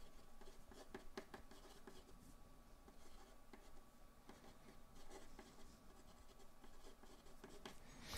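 Felt-tip marker writing on paper: faint, short scratching strokes, one after another.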